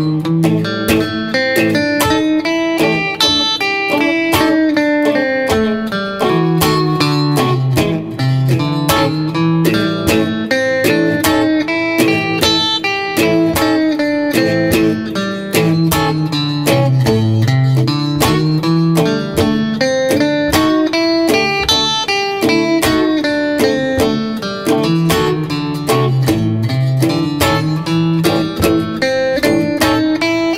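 Electric guitar playing quick runs of single notes from the blues scale, with flatted blue notes, over a blues backing in A. Under it a bass line repeats its pattern about every five seconds with a steady drum beat.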